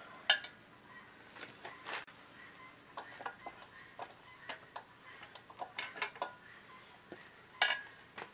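Irregular sharp metallic clicks and taps of steel carriage bolts and nuts being shaken loose and worked out of the joined pads of an over-the-tire skid steer track.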